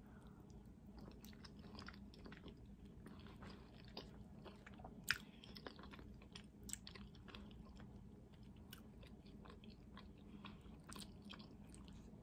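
Faint chewing of a forkful of soft spinach-ricotta pasta, with many small mouth clicks and one sharper click about five seconds in.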